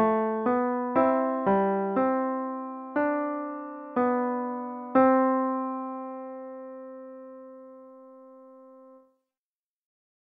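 Piano playback of a two-voice counterpoint: a moving bass line under a slow cantus firmus, with notes struck about two a second, slowing to one a second. It ends on a final chord held about four seconds that fades and cuts off suddenly.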